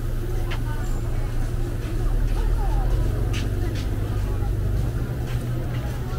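Street ambience: a steady low rumble of road traffic under the chatter of passing pedestrians, with a few sharp clicks.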